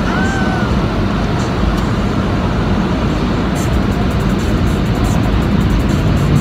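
Automatic car wash machinery heard from inside the car: a steady, loud rushing noise with a deep rumble.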